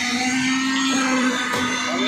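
Concrete needle (poker) vibrator running steadily with an even motor whine as its flexible shaft is held in freshly poured slab concrete.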